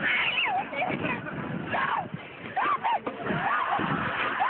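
People on a thrill ride screaming and yelling: a string of short, high cries that rise and fall.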